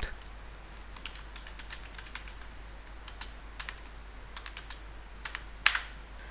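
Typing on a computer keyboard: a run of irregular key clicks as a short command is typed, with one louder keystroke near the end.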